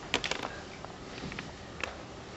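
A few light, irregular clicks and taps over faint room hiss: a quick cluster at the start and another near the end.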